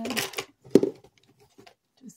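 Rustling handling noise as fabric and objects are picked up off a table, then one sharp knock a little under a second in, followed by a few faint clicks.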